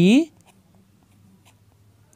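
Writing on a touchscreen: a few faint, scattered taps after a spoken word ends at the start, over a faint low hum.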